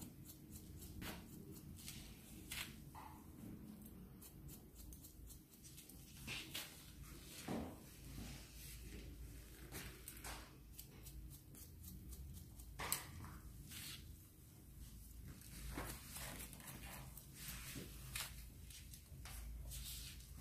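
Hair-cutting scissors snipping through hair in short, irregular, faint clicks as a bob is cut into to soften its sections; one snip about two-thirds through is sharper than the rest.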